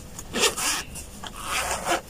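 Two short rasping rubs, about a second apart, from something being handled close to the microphone.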